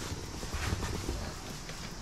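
A spoon stirring and mixing cooked rice in a glass bowl, with quiet, irregular small taps and scrapes of the spoon against the glass, as sushi rice is mixed and cooled.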